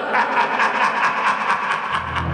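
Large crowd cheering and applauding, a dense wash of many voices and quick claps.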